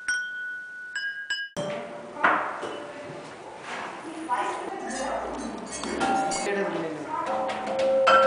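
A few clear, ringing chime-like notes, then, from about one and a half seconds in, a busier mix of glass clinking and pinging with voices behind it.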